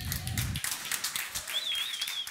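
Scattered audience clapping, heard as many irregular claps, with a brief high warbling chirp near the end.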